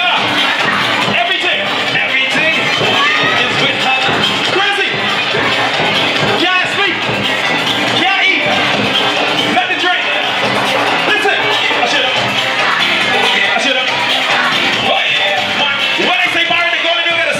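A song's backing track played loud through a PA speaker, with a man singing into a handheld microphone over it.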